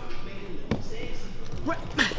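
Thuds of bodies and feet hitting a padded mat during grappling, two sharp ones, a little under a second in and near the end, over background chatter in a large hall.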